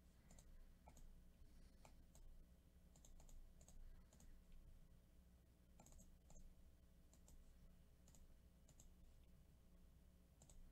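Near silence with faint, irregular clicks from a computer mouse and keyboard over a low steady hum.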